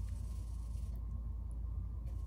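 Steady low hum under faint background noise, with no distinct event: room tone.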